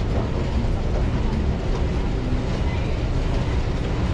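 Escalator running: a steady low rumble with no breaks.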